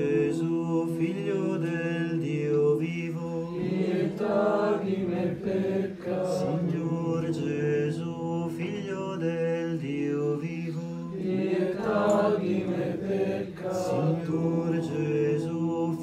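Slow chanted Christian prayer, voices singing a melody over a steady held drone note.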